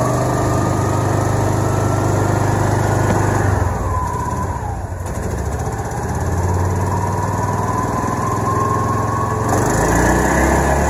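John Deere Gator's small gasoline engine, cold-started on choke, running with the gas pedal held down. Its speed sags about four seconds in, then climbs back up.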